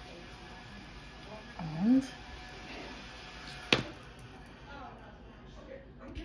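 A short hummed vocal sound from a person, rising then falling in pitch, about two seconds in, then a single sharp click near the middle, over a steady low room hiss.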